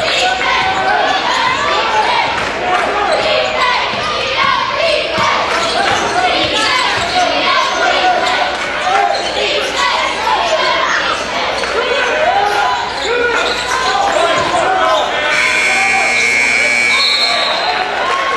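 Live basketball game sound in a gymnasium: the ball bouncing, sneakers squeaking on the hardwood floor, and players' and spectators' voices. Near the end a steady high tone sounds for about two seconds.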